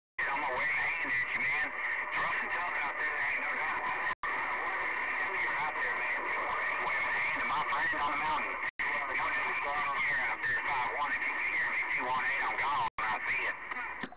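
CB radio receiver hissing with heavy static, with a faint, garbled voice from a distant station warbling through it. The audio drops out briefly three times. The noise is the 'mess' of rough band conditions that the signal has to get through.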